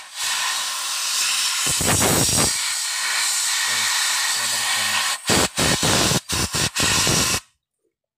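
A pressurised jet hissing steadily onto a Honda scooter's ACG starter stator to blow off the dirt and dust clogging it. It breaks into about six short bursts near the end and then stops.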